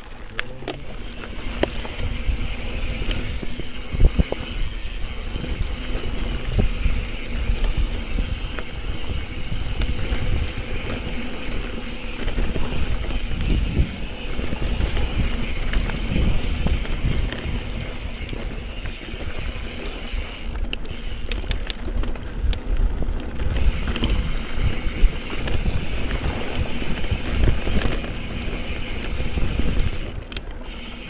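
Steady wind rumble on the microphone over the tyre and drivetrain noise of a Specialized Camber 650b mountain bike riding fast on dirt singletrack, with scattered sharp clicks and knocks as the bike goes over bumps.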